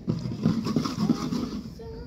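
Water sloshing and swirling inside a glass water bottle being spun by hand to form a vortex, with irregular handling knocks, against background voices. A steady tone starts near the end.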